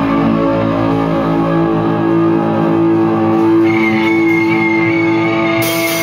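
Electric guitars playing sustained chords together in a loud rock band rehearsal. A high lead note comes in about two-thirds of the way through and is held to the end.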